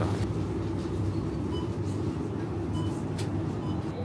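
Supermarket background: a steady low hum from refrigerated display shelves, with a few faint short high beeps and one sharp click about three seconds in.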